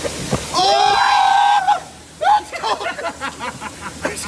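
A man's long, high-pitched shriek, held steady for about a second, then laughter.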